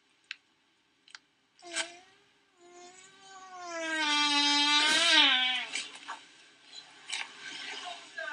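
A woman's voice drawn out in one long, wavering, high-pitched call of about three seconds, rising near its end and then dropping away, with two faint clicks before it.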